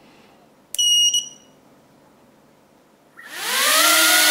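Tiny brushless quadcopter motors with two-bladed 65 mm propellers spooling up on a thrust-test stand about three seconds in: a whine that rises in pitch and then holds steady. Before that it is quiet apart from one short high electronic beep about a second in.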